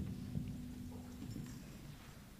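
Faint shuffling and light knocks of people moving about in a church, with a faint low hum that stops about three quarters of the way through.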